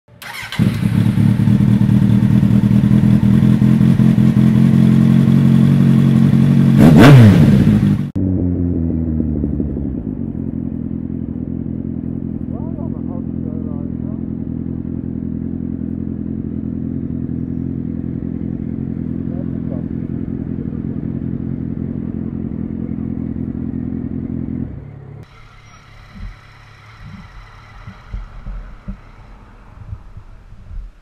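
Motorcycle engine recorded from the rider's own bike: loud running with a brief rev up and down about seven seconds in, then a lower, steady run at low speed. It stops about 25 seconds in, leaving quieter street sound with a few knocks.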